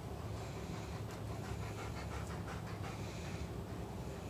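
Chocolate Labrador retriever panting in a quick run of short breaths that eases off shortly before the end.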